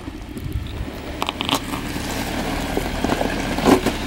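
Off-road vehicle crawling up a loose rock trail: a low, steady engine sound with scattered crackling of tyres over stones.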